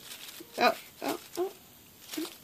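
A house cat giving three short calls in quick succession during play, the first the loudest.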